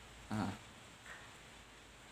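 A single short spoken "nah", then quiet room tone.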